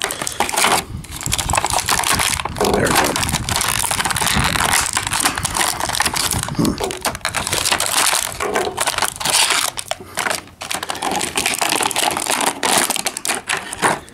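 Clear plastic packaging crinkling and crackling in the hands, thick with small clicks, as a toy action figure is cut out of its bag and handled.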